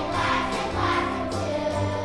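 A young children's choir singing with instrumental accompaniment and a steady pulsing bass beat.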